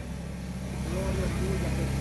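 A steady low hum runs through the pause, with a faint voice in the background from about a second in.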